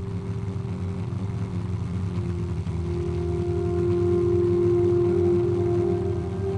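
Steady low drone of a propeller aircraft engine, with long held notes of ambient music swelling in over it about three seconds in and growing a little louder.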